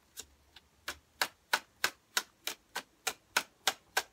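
A tarot deck being overhand shuffled by hand: sharp card clicks, a few scattered at first, then a steady even run of about three a second from about a second in.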